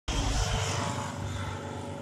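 Production-logo sound effect: a loud rumble with hiss that starts suddenly and slowly fades.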